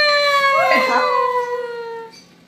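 A child's voice holding one long sung note that slowly falls in pitch and stops right at the end, with a brief second voice sliding upward about a second in.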